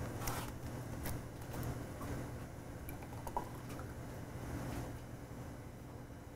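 Quiet laboratory room tone with a steady low hum, broken by a few faint, brief clicks and rustles of gloved hands handling plastic tubes and filter columns.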